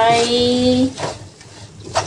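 A woman's voice drawing out one long, slightly rising syllable for about a second, then a quieter stretch.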